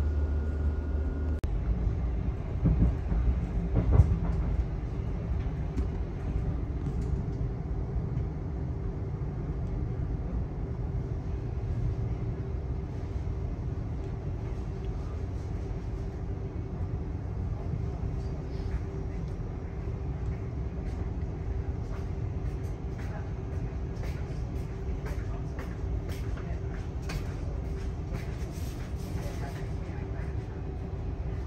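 Inside the carriage of a Great Northern electric train running between stations: a continuous rumble of wheels on rail with a steady hum, a few knocks early on, and scattered clicks in the last third as it draws into the next station.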